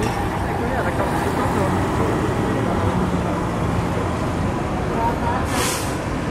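Steady low engine rumble with traffic-like background noise and faint distant voices, and a short hiss near the end.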